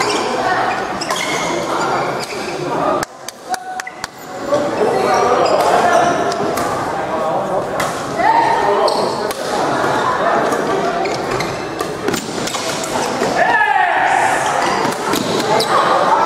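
Many voices talking and calling in a large sports hall, with sharp clicks of badminton rackets striking a shuttlecock. The voices drop briefly about three seconds in, leaving a few clicks.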